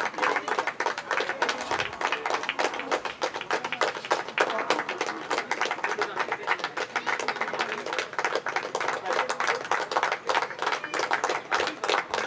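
A small group of people clapping steadily and unevenly, with voices talking beneath.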